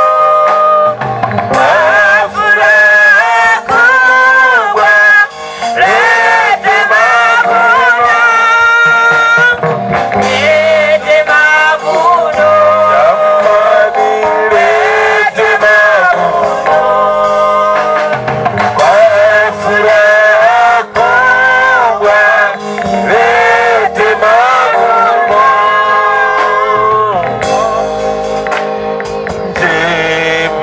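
A church choir singing a hymn into microphones: a man's lead voice with several women's voices singing together, continuous throughout.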